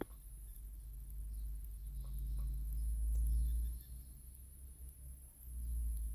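Faint handling noise as fingers work the plastic car-alarm remote apart, lifting its rubber keypad and circuit board: a short click at the start, a couple of soft ticks, and a low rumble from the hands.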